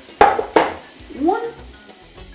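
Two sharp knocks of a wooden spoon against a cooking pot, about a third of a second apart.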